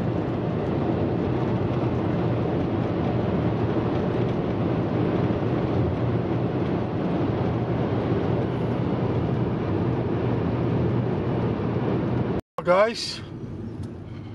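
Steady road and engine noise inside a car's cabin cruising at highway speed, with an even low hum. Near the end the sound cuts out for an instant and a voice follows.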